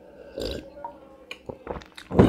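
A man gulping a drink from a glass mug, with a short throaty gulp about half a second in, then a few light knocks near the end as the mug comes back down to the table.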